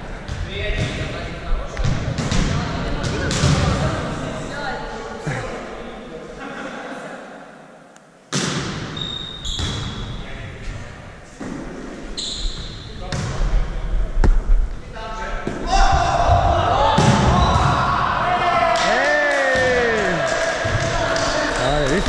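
Volleyball play in a large gym hall: sharp hits and slaps on the ball and the ball bouncing on the floor, under players' voices and calls. The sound drops away and cuts back in abruptly about eight seconds in, and voices grow louder near the end.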